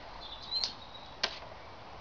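Two light clicks, a little over half a second apart, from a boxer puppy's paws on a plastic slide, over faint outdoor background hiss.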